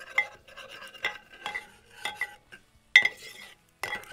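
A metal spoon scraping and stirring shallots and garlic across the bottom of a ceramic Rockcrok pan. It goes in several short scraping strokes with small clinks, loosening the browned bits of seared chicken stuck to the pan for a pan sauce.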